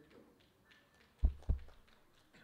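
Two dull, low thumps about a quarter second apart, a little over a second in, over faint room sound.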